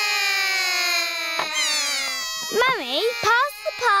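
A cartoon character's voice: one long held call that slowly falls in pitch for about two seconds, then a few short wavering vocal sounds.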